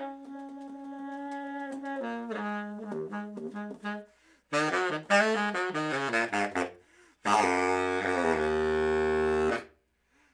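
Unaccompanied baritone saxophone: a long held note, then quick runs of short notes broken by brief gaps. Near the end comes a loud held note with a raspy edge, lasting about two seconds before it cuts off.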